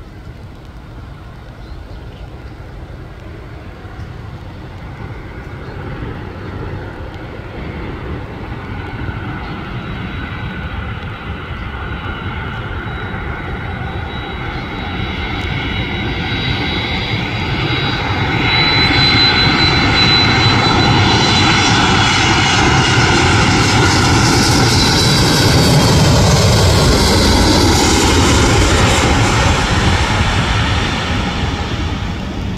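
Boeing 767 jet airliner on final approach, its engine noise building steadily over the first half as it nears. A high whine rides on top, and the sound is loudest from about two-thirds of the way in as the plane passes close by, staying loud almost to the end.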